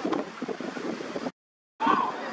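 Wind buffeting the microphone over the scattered voices of spectators on the sideline. About a second and a half in, the sound cuts out completely for under half a second, then comes back louder.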